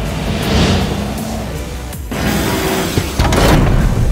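Electronic action soundtrack music with sound effects mixed in: a whoosh about half a second in, and the sound getting louder after a short dip at about two seconds.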